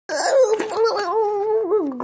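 A person's voice letting out one long, wavering wail that dips in pitch near the end: a play-acted cry for a toy character being beaten.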